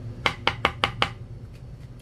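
Five quick, sharp knocks on a hard tabletop, about a fifth of a second apart, in the first second.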